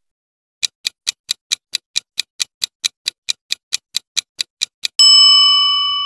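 Countdown timer sound effect: a run of about twenty fast, evenly spaced clock ticks, roughly four or five a second, then a loud bell ding near the end that rings on as a chord of steady tones, slowly fading.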